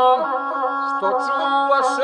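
Gusle, the single-string bowed folk fiddle, playing a nasal, ornamented line under a man's voice chanting epic verse, with a few hissing consonants.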